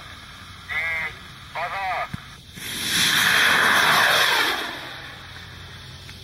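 Two shouted countdown calls about a second apart, then a model rocket lifting off. Its motor's rushing hiss starts about two and a half seconds in, holds for about two seconds and fades as the rocket climbs away.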